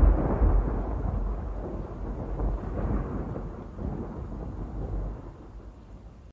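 A deep, noisy rumble, loudest at the start, that slowly dies away over several seconds.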